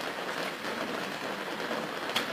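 Steady hiss and rustle of a crowded church room in a pause between spoken sentences, with no clear voice or distinct event.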